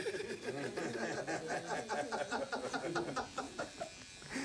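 A man chuckling, a long run of short laughs.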